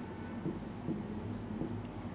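Faint taps and scratches of a stylus writing on an interactive whiteboard screen, a few short strokes spread through the moment.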